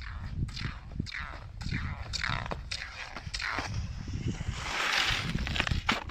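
Cross-country skis and poles on a groomed classic track: a rhythmic swish of strides and pole plants in the snow, about two strokes a second, over a low wind rumble on the microphone.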